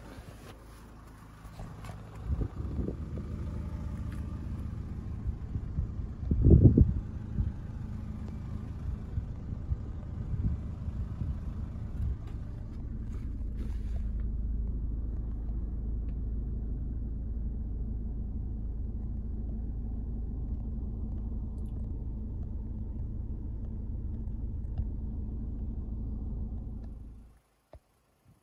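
Ford Mondeo Mk4's 2.0 TDCi four-cylinder turbodiesel running at idle, heard from inside the cabin. It comes in about two seconds in, has one brief louder surge about six seconds in, then runs on steadily.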